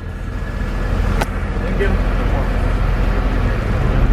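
Low, steady rumble of a van's engine and road noise heard from inside the cab, growing slightly louder, with one sharp click about a second in.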